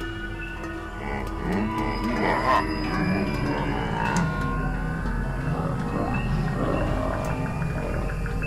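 Live-coded experimental electronic music: layered sounds whose pitch swoops up and down in short arcs, over held tones and a steady low drone.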